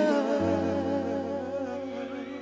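Live pop ballad music: a wordless solo melody line with a quick, even vibrato, sounded into hands cupped around the microphone, over sustained band chords. A low bass note comes in about half a second in.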